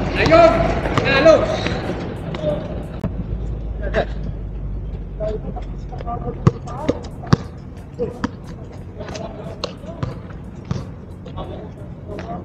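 A basketball bouncing on an outdoor concrete court: sharp separate bounces, with a quick run of three dribbles about halfway through. Players' voices call out in the first couple of seconds.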